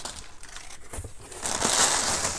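Crumpled brown kraft packing paper rustling and crinkling as it is pulled out of a cardboard shipping box, louder in the second half.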